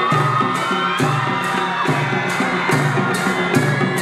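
Nepali traditional band music (panche baja style): a barrel drum beating steadily about twice a second with cymbal clashes on the beat, under a wavering reedy wind melody.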